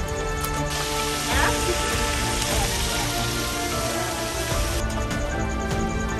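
Fish frying in hot oil in a pan over a wood fire: a steady sizzle that fades out near the end, with background music.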